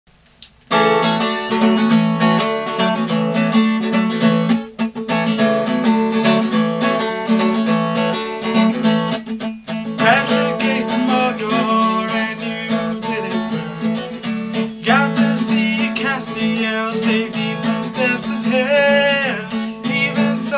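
Steel-string acoustic guitar strummed in a steady rhythm, starting just under a second in. A man's singing voice joins about halfway through.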